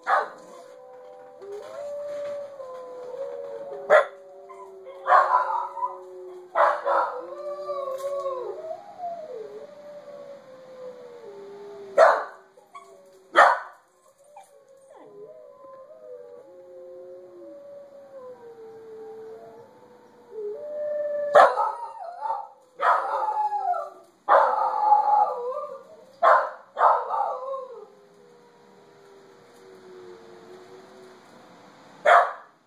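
A recording of wolves howling: long overlapping howls that glide slowly up and down. A corgi barks sharply over it, a few single barks in the first half and a rapid flurry of barks in the last third.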